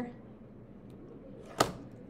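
Faint room tone with a single sharp click about one and a half seconds in.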